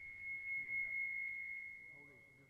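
A single steady high-pitched tone, swelling and then slowly fading, over a live PA system: microphone feedback ringing.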